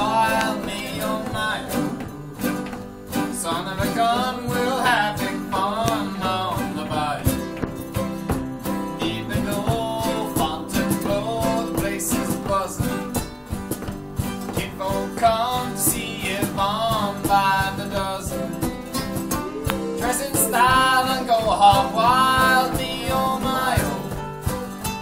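A group of acoustic and electric guitars strumming a country song, with a wavering lead melody line carried over the chords.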